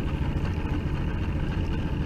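A boat's engine idling with a steady low rumble.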